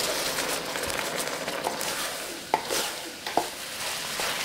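Green beans sizzling faintly in chicken broth in an electric wok, stirred with a wooden spatula that knocks sharply against the wok twice in the second half.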